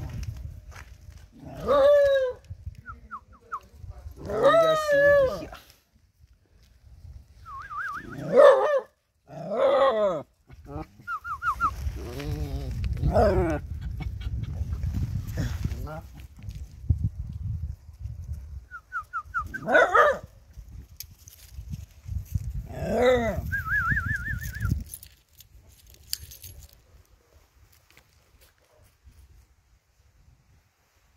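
A young dog yelping and whining in short calls, about seven of them spread over the first twenty-five seconds, with quick high chirping ticks between the calls.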